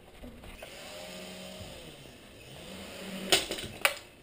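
Small toy RC helicopter's electric rotor motor whining, its pitch drifting up and down as the throttle changes, then two sharp knocks near the end as it crashes into something. The impact sounded bad.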